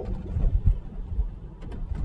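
Low road and tyre rumble inside the cabin of a Tesla Model 3 driving on a wet street, with a few brief low thumps about half a second in.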